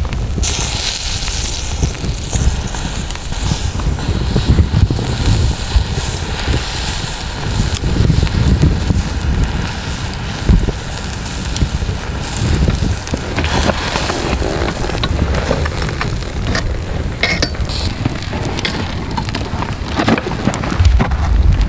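Wood campfire burning, with scattered crackles and pops over a continuous heavy low rumble.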